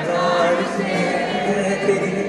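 Live concert music from the stage sound system with a crowd singing along, many voices carrying the sung melody.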